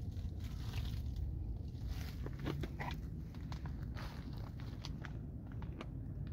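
Footsteps crunching and rustling on dry leaf mulch, a scatter of short crackles over a steady low rumble.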